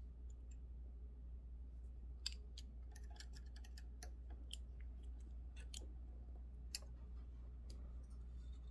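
Faint, scattered small metallic clicks and taps as a small screwdriver and the needles are handled at the needle clamps of a multi-needle embroidery machine, while needles are being changed. A low steady hum runs underneath.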